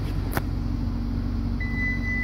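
Low steady vehicle rumble with a sharp click about half a second in. Near the end a single steady beep starts: the Toyota Highlander's power liftgate warning tone as the gate begins to move.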